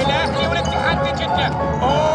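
Basketball being dribbled on a hardwood court, with sneakers squeaking on the floor in short, frequent chirps over background music.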